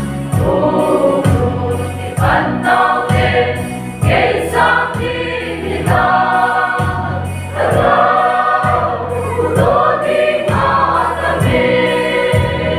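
Large mixed choir of women's and men's voices singing a gospel song together over a steady low beat.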